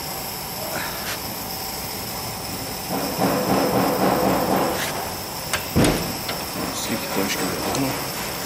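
Metal clicks and one sharp knock about six seconds in as the front brake caliper and pads of a van are worked on for pad removal, over a steady workshop hiss.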